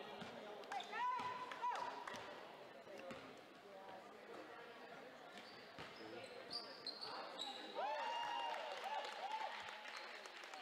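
Basketball shoes squeaking on a hardwood gym floor and a basketball bouncing during live play. There is a cluster of short squeaks about a second in and another near the end, with knocks of the ball in between.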